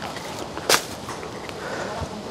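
A short, sharp swish about two-thirds of a second in, as leafy undergrowth brushes past while someone walks through dense weeds, over a steady outdoor hiss.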